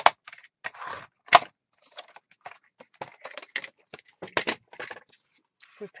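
Sliding paper trimmer cutting cardstock: a sharp click at the start, a short scrape, then a louder click a little over a second in. Scattered small clicks and taps of the trimmer and paper being handled follow.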